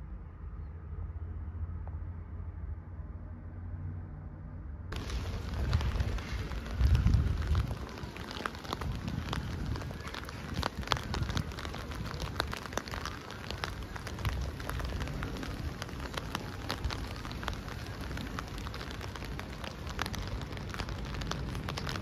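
For the first five seconds, a muffled low rumble of city traffic. Then rain on a wet street, a steady hiss with many sharp ticks of drops close by. Loud low gusts of wind hit the microphone about a second after the rain begins.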